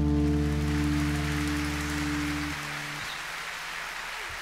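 Final chord of an acoustic guitar ringing out, then damped in two steps about two-thirds of the way through. Audience applause rises under it and carries on after the strings fall silent.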